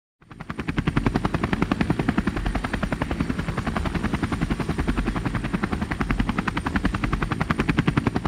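Helicopter rotor chopping in a rapid, even beat, fading in over the first second and then holding steady, with a faint high whine above it.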